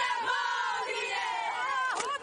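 A team of women chanting a Māori haka together, many voices shouting in unison. Near the end, a drawn-out call falls in pitch.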